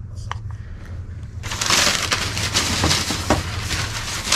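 A plastic bag and tissue paper rustling and crinkling as they are handled, starting suddenly about a second and a half in and carrying on loudly.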